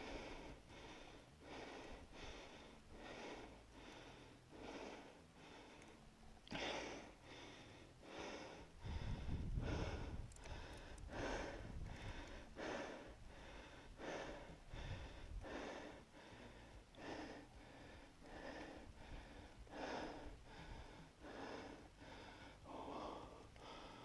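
A man breathing hard and fast close to the microphone, a short breath sound about every three-quarters of a second, as he hauls a fish up through an ice hole by hand. The breathing is faint, with a few low rumbles in the middle.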